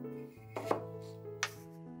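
Two sharp knocks of a hand tool working wood, the first a quick cluster about half a second in and the second a single knock about a second later, over soft background piano music.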